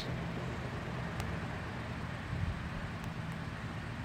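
Steady low background rumble with a faint hiss, with a couple of faint small clicks.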